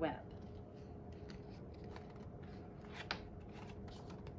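A picture book's page being turned by hand: faint paper rustling and light clicks, with one sharper click about three seconds in.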